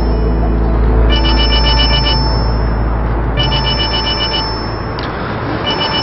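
A phone ringtone sounding in three identical rings, each about a second long and about two seconds apart, over a steady low rumble.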